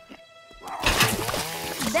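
Soft cartoon background music with a held note, then from about half a second in a loud, hissy sound effect with wavering tones inside it.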